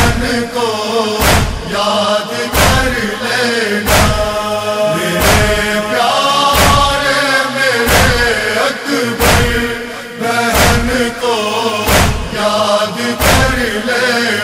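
Urdu noha (Muharram mourning lament) in an interlude between verses: held, wordless chanted vocals over a steady percussive beat, one strike about every 1.3 seconds.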